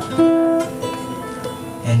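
Ukulele being picked as accompaniment: a clear note starts sharply about a quarter second in and rings out, followed by softer plucked notes.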